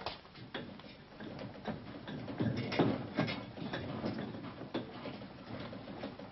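Irregular light knocks and clicks, scattered and uneven, busiest around the middle, over a faint hiss.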